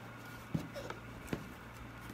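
A cardboard box being handled: two light knocks, about a second apart, over a faint steady hum.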